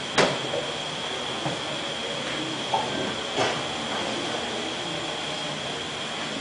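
Steady room noise with a thin high-pitched whine running under it, and a few knocks and bumps. The sharpest knock comes just after the start and lighter ones follow over the next few seconds.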